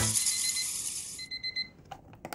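A music track fades out, and a bedside alarm clock starts beeping: a faint high beep about halfway through, then a louder one near the end.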